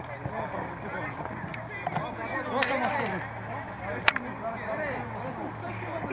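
Several voices of players and onlookers calling out and talking over one another on an open football pitch. A single sharp knock comes about four seconds in.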